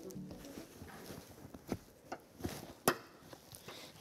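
A few faint clicks and knocks of a child car seat's LATCH lower-anchor connector being worked onto the car's anchor bar. The loudest click, about three seconds in, is the connector latching.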